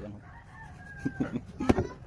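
A faint, drawn-out animal call of about a second, followed by a sharp click near the end.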